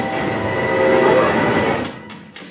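Film sound effect of a Thomas the Tank Engine toy train mixed as a full-size locomotive: a loud, dense rushing of train wheels on rails, played back through cinema speakers. It cuts off suddenly right at the end.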